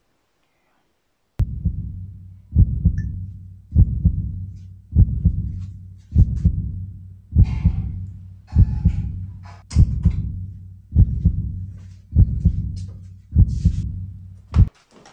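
Heartbeat sound effect: deep double thumps, one about every 1.2 seconds, starting about a second and a half in and repeating evenly, eleven beats in all.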